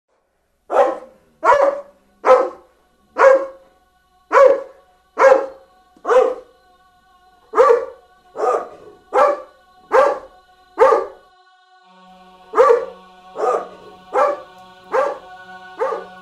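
A dog barking in a steady series of single barks, under a second apart, about seventeen in all. From about halfway, sustained music notes and a low held tone play underneath.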